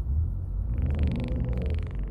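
Low, steady rumble of a car's idling engine heard inside the cabin, with a brief breathy hiss a little under a second in.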